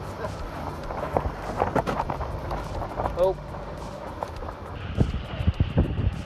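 Knocks and clatter of people climbing across a sailboat's lifelines and deck into a rigid-hull inflatable boat alongside, over the low steady hum of the inflatable's engine idling and the wash of wind and sea. A short laugh comes about three seconds in, and a brief high hiss near the end.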